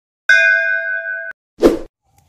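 Edited-in sound effects: a bright metallic ding that rings for about a second and cuts off abruptly, then a short noisy hit.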